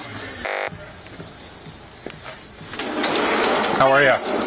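Body-camera audio: a short beep-like tone about half a second in, then faint hiss, then voices growing louder near the end as a sliding glass door opens onto the party.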